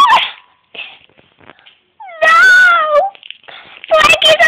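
A single drawn-out, meow-like cry about two seconds in, falling in pitch and lasting under a second, with faint clicks and rustles before it.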